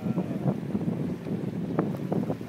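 Wind buffeting the microphone: an uneven low rushing rumble outdoors by the sea.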